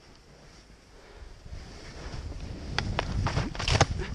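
Skis sliding through powder snow with wind on the microphone, the rushing noise growing louder after about a second as speed builds. A few short, sharp scrapes come near the end.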